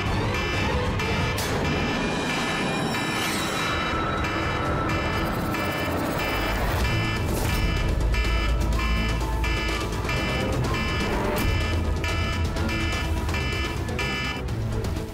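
A mobile phone's reminder tone beeping over and over at an even pace, over dramatic background music with a deep rumble that swells about eight seconds in. The beep is the signal set to trigger a programmed attack.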